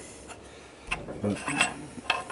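A bronze slide valve and its steel bolt clinking and scraping lightly on a steel bench top as they are handled, a few faint clicks.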